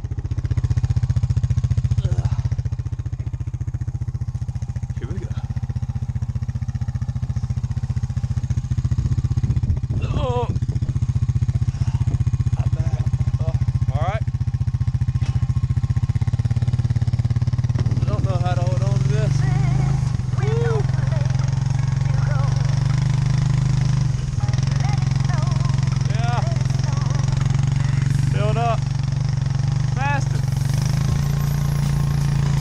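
Four-wheeler (ATV) engine running steadily while it tows a sled across snow, getting louder a little past halfway. A person calls out several times over it.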